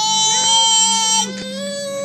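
A toddler's long, high-pitched vocal squeal held at a steady pitch. It stops about a second and a quarter in and gives way to a lower, shorter voice sound.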